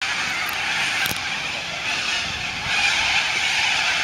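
A flock of cockatoos screeching all at once in a steady, dense din, growing a little louder about two and a half seconds in.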